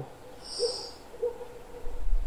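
A person breathing in, heard as a short soft hiss about half a second in, during the inhale of a cat-cow stretch. Two faint low notes sit beneath it, and a low rumble starts near the end.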